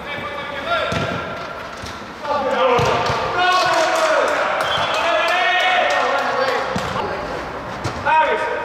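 A football being kicked and struck on an indoor artificial-turf pitch, giving several sharp knocks that echo round the hall. Players shout loudly over it for most of the second half.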